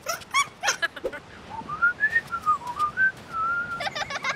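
A few short squeaky cartoon vocal yelps in the first second, then a whistled tune: one clear tone that wanders up and down for about two and a half seconds.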